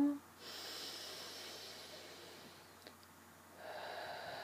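A woman taking slow deep breaths: a long breathy rush lasting about a second and a half begins about half a second in, and a second long breath starts near the end.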